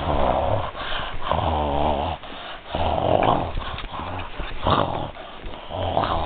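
Dogs play-fighting, growling in a run of short rough bursts, about one a second.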